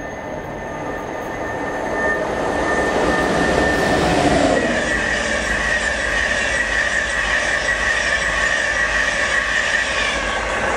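InterCity 225 express train (Mark 4 coaches) running past at speed: a rushing rumble of wheels on rail that builds from about two seconds in, with a steady high whine that grows louder about halfway through.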